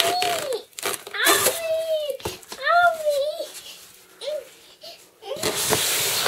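A young child's high-pitched voice calling out in long, drawn-out cries, three or four of them, with a couple of sharp knocks in between. Near the end, cardboard and plastic wrap rustle as a box is handled.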